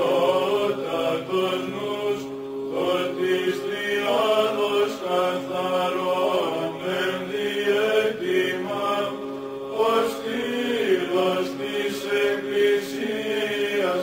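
Greek Orthodox Byzantine chant: voices singing a winding melody over a steady held drone note (the ison).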